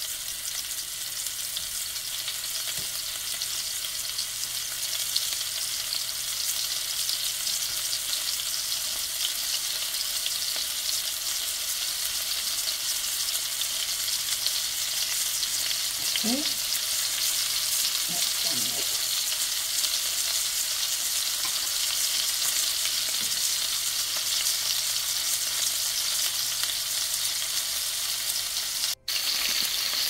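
Flour-dusted meatballs frying in oil in a stainless steel pan, a steady sizzling hiss that grows slightly louder, with a brief break near the end.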